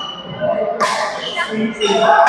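A badminton racket strikes a shuttlecock with a sharp crack about a second in, during a rally. Short high squeaks from shoes on the court floor come before and after it.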